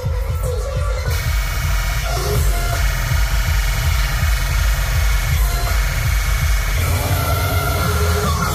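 Electronic dance music played at high volume through a large outdoor DJ sound system, dominated by heavy bass.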